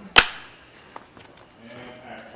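Film clapperboard snapped shut once: a single sharp crack slating take two of the shot.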